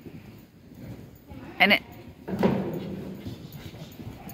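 A dog gives one short, sharp bark about one and a half seconds in, followed by a longer, louder voiced sound.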